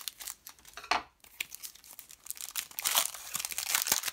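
Foil booster-pack wrapper of trading cards crinkling and rustling in the hands as the pack is opened and emptied. It comes in irregular crackly bursts, with a denser, louder stretch near the end.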